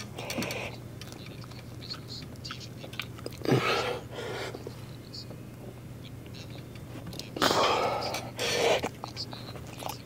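A man's strained exhales and grunts during a set of rear-delt flyes on a weight machine: short breathy bursts a few seconds apart, one with a falling groan about three and a half seconds in and a longer pair near the end.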